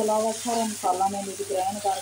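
Meat pieces frying in a masala in a non-stick wok, stirred with a wooden spatula, with a steady high sizzle. A voice is louder over it, in short pitched phrases that the recogniser did not write down as words.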